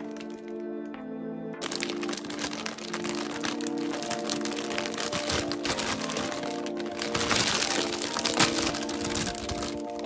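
A plastic bag of individually wrapped hard candies crinkles as it is handled, starting a couple of seconds in and heaviest in the second half. Light background music plays throughout.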